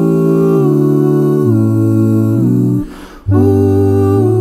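Male a cappella ensemble humming wordless chords in close harmony, the bass stepping down a note at a time. The voices break off for about half a second just before three seconds in, then come back on a new sustained chord.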